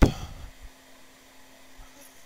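A sharp click as the UP command is given, followed by about half a second of fading low motor noise as the Taig micro mill's servo-driven Z axis lifts the spindle. After that only a faint steady hum remains.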